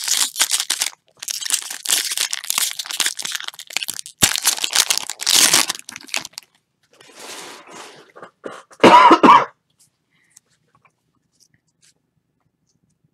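Foil wrapper of a 2014 Bowman Draft jumbo card pack being torn open and crinkled by hand, in bursts of crackling over the first six seconds. Near the end comes a single short, loud cough.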